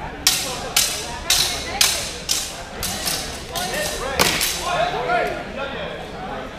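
Steel longswords clashing blade on blade in a rapid series of about nine sharp, ringing strikes, roughly two a second, during a fencing exchange. Voices call out in the later part.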